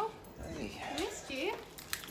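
A dog whining and yipping: three or four short whines that slide down and back up in pitch.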